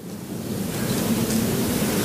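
Audience applauding in a hall, the clapping swelling in the first half-second and then holding steady.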